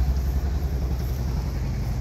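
A loud, steady low rumble with no speech over it.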